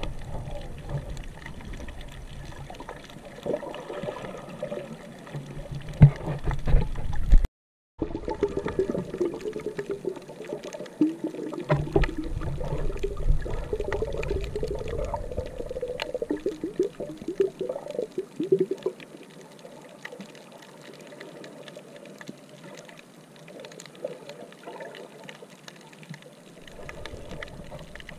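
Muffled water sound picked up by a submerged camera: sloshing and bubbling with scattered clicks and faint wavering tones. The sound cuts out for a moment near the end of the first third and grows quieter over the last third.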